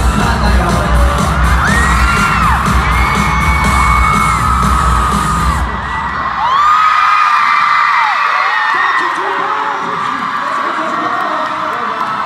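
Live K-pop concert music with a heavy beat, with fans screaming over it. The music stops about six seconds in, and the crowd keeps screaming and cheering.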